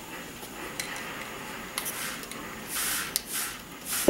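Hand-held plastic trigger spray bottle misting water onto a watercolor painting: several quick squirts in the second half, the longest about three seconds in, each a short hiss with a click of the trigger.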